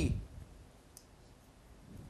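A pause in a man's speech: the end of a word, then quiet room tone with one faint, short click about a second in.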